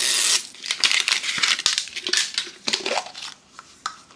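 Plastic packaging being torn and handled as a plastic surprise egg is opened: a short loud rip right at the start, then irregular crinkling and crackling of plastic wrap with small clicks, fading near the end.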